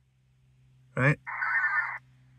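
A burst of VARA HF high-speed digital data tones from the Icom 7100 transceiver during a Winlink email exchange on 30 meters. It starts just after a spoken word and runs for under a second as a hissing block of rapidly shifting tones, then cuts off abruptly.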